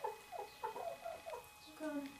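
Light Sussex hens giving a quick run of short calls, about six in two seconds.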